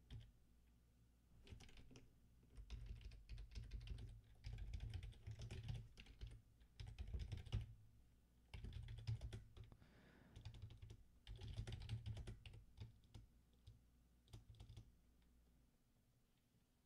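Faint typing on a computer keyboard: quick runs of key clicks in bursts, with short pauses between them.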